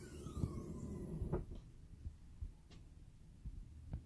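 A car's rear hatch being lifted open by hand: a falling creak that fades within the first half second, then low rumbling with a few faint clicks.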